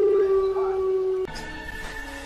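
A long, steady howl-like wail held on one pitch, cut off suddenly just over a second in. Fainter eerie tones carry on under it and after it.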